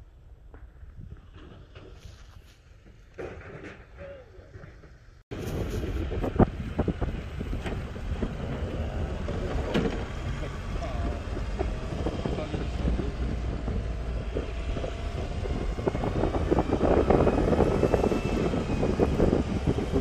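Ride noise from a golf cart moving along a cart path, with wind on the microphone. It starts abruptly about five seconds in and runs steadily louder from there; before that, only faint quiet outdoor sounds.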